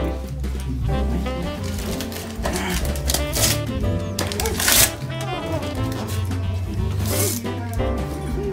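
Gift wrapping paper being torn off a present, with a few sharp rips and rustling, over background music with a steady bass line.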